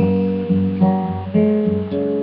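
Acoustic guitar fingerpicked slowly: about five notes and open-string pairs plucked one after another, each left ringing into the next.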